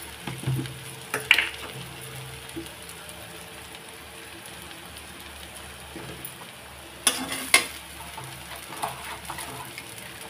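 Chow mein noodles sizzling steadily as they stir-fry in a hot metal kadhai. A metal utensil scrapes and knocks against the pan a few times, loudest twice about seven seconds in.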